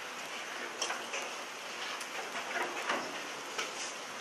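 Room tone in a lecture hall during a pause: a steady hiss with a few faint scattered clicks.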